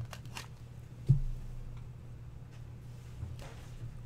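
Trading cards being handled and slid into clear plastic sleeves: a few soft clicks and rustles, with one sharp low knock about a second in, over a steady low hum.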